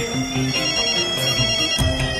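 Mobile phone ringing with a melodic ringtone: a tune of short notes stepping up and down over steady high tones.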